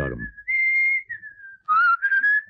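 Human whistling used as a call: a thin whistled note that steps up, holds, then slides down, answered near the end by a second, louder whistle that rises in pitch, as two people whistle to each other.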